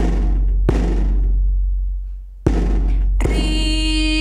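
A large frame drum struck with a stick, four deep booming strokes that ring out and fade between hits. A woman's singing voice comes in with the last stroke, near the end.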